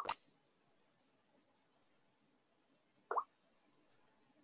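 A sharp click at the very start, then a single short plop that falls in pitch about three seconds in, over quiet room tone.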